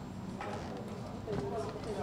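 Indistinct voices of several people talking in the background, with a light click about half a second in.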